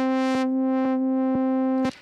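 Groove Rider 2's synth playing the same note over and over, retriggered about every half second. The tone's brightness changes as the recorded filter-cutoff automation plays back. It stops shortly before the end.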